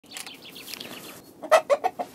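Chickens clucking: a run of quick, faint high chirps, then four loud clucks in quick succession near the end.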